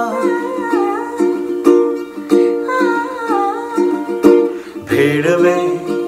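Ukulele strumming chords in a steady rhythm, about two strums a second, as an instrumental passage between sung lines.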